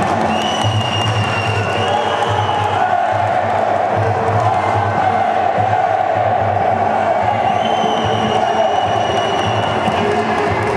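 Music with a steady low beat over a crowd in a sports hall shouting and cheering. Two long high steady tones stand out, one in the first few seconds and one near the end.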